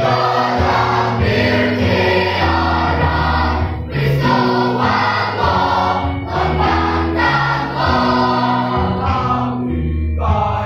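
Mixed youth choir of boys and girls singing a Karbi gospel song together, in held, changing chords.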